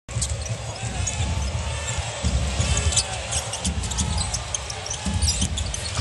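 Basketball being dribbled on a hardwood court during live play, with irregular thuds, short high squeaks from players' shoes and steady arena crowd noise underneath.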